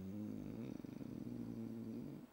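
A man's quiet, low, drawn-out hesitation hum, rough and creaky in the middle, held as a filled pause between words.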